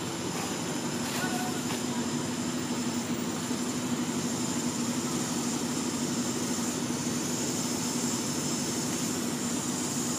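Steady outdoor background noise: an even low hum with a high, constant hiss above it, unchanging throughout. No distinct monkey calls stand out.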